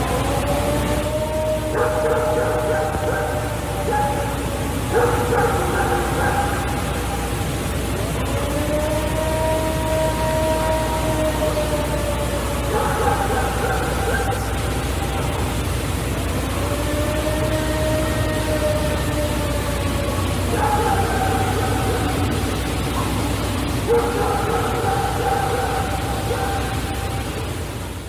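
Playback of the "Ohio Howl" field recording, said to be of a Bigfoot: a series of about eight long, wailing howls, each a few seconds long and rising then falling in pitch, over steady recording hiss and low rumble.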